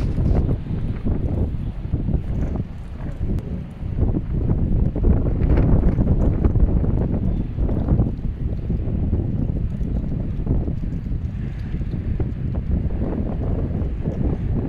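Wind buffeting the microphone: a loud, uneven low rumble that rises and falls in gusts, strongest around the middle.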